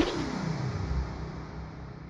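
Electronic music: a synthesizer sweep falling steadily in pitch that trails off into a slowly fading, hissy wash.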